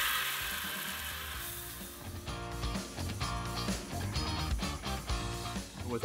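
Water spraying from a hose nozzle into a plastic bucket, fading out over the first second or two. After that, background music with guitar plays.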